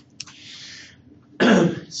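A man clears his throat once, loudly, about a second and a half in, after a faint click and a soft breathy hiss.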